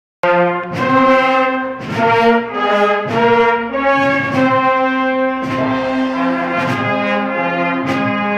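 Spanish wind band (banda de música) playing a slow processional march: sustained brass chords that change every second or so, punctuated by percussion strikes about once a second.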